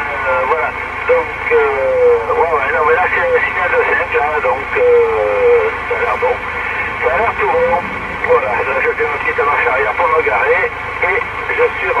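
A distant station's voice received on a President Lincoln II+ CB radio in lower sideband, coming through the speaker thin and cut off above about 3 kHz, over steady background hiss.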